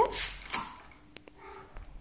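A few faint, sharp clicks, in two pairs about half a second apart, over quiet room tone.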